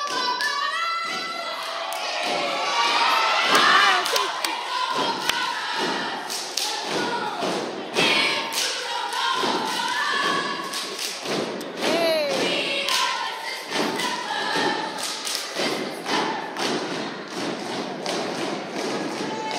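A dance team stomping and clapping through a step routine on stage, a steady run of sharp thuds and claps with no backing music, mixed with shouting and cheering voices.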